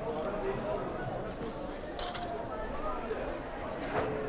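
Indistinct background voices of people talking, with a short scraping rustle about halfway through.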